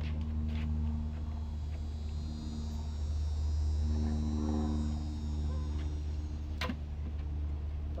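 A motor vehicle's engine running nearby over a steady low rumble, its pitched note swelling in the middle. There is one sharp click near the end.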